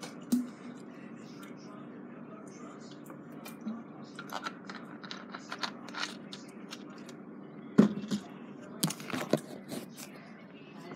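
Handling noise from a phone camera being moved against clothing: scratchy rubbing and clicks, then a loud knock about eight seconds in and a few more knocks a second later, over a steady low hum.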